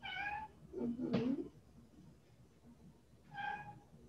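Domestic cat meowing: a short high meow at the start, a lower, bending meow about a second in, and another short high meow near the end.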